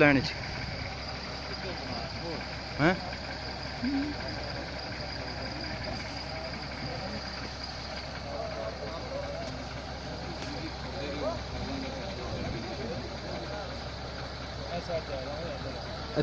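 A steady low hum runs throughout under scattered, faint men's voices, with a short louder call about three seconds in.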